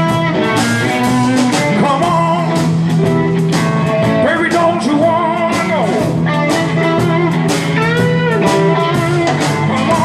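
Live blues band playing: electric guitars, drum kit and keyboard, with a steady beat and some bent, gliding notes over the groove.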